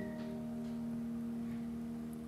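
A soft chord held on the piano, its notes ringing steadily through a pause in the singing.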